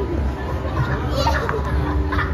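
Children playing and chattering excitedly, with a few high-pitched squeals about a second in, over a steady low hum.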